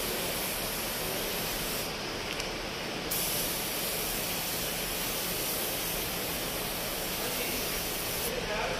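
Gravity-feed air spray gun laying down the colour coat on a car bumper: a steady hiss of compressed air and atomised paint. The sharpest top of the hiss drops away for about a second around two seconds in, then returns.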